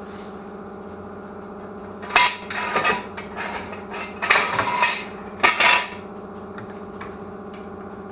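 Steel jack stand and floor jack clanking and rattling as they are set under a car, in four bursts from about two seconds in to about six seconds, over a steady hum.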